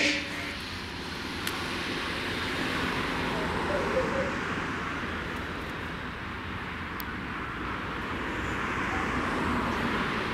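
Distant engine noise, a steady rush that swells over a few seconds, eases and swells again near the end. A brief loud pitched cry sounds at the very start.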